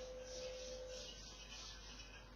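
Faint chalkboard duster wiping across the board in a quick series of rubbing strokes, about two or three a second. Under it is a steady faint tone that weakens after about a second.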